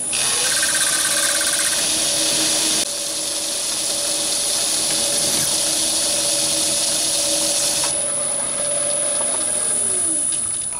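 Metal lathe spindle spinning up with a rising whine to about 1000 rpm and running steadily, with a twist drill in the tailstock chuck cutting through the workpiece for the first few seconds, then the spindle winding down with a falling whine near the end.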